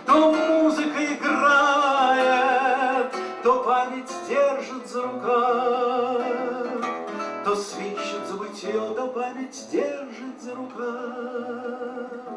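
A man singing to his own acoustic guitar: wavering held notes over strummed chords, then the guitar plays on, growing quieter toward the end as the song closes.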